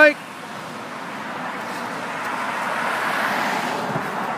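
Road traffic: a car passing by on the street, a rushing noise that builds to its loudest about three seconds in and then fades.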